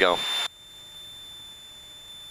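Intercom audio: a man's voice ends a word over a steady high-pitched tone, then the feed cuts off suddenly about half a second in, leaving only a faint steady hiss.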